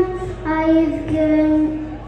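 A child singing into a microphone in long held notes, with a short break about half a second in before the next sustained note.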